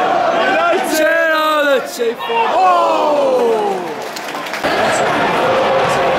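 Football stadium crowd noise, with a man close by giving long, drawn-out shouts from about one to four seconds in. The pitch rises and holds, then falls away.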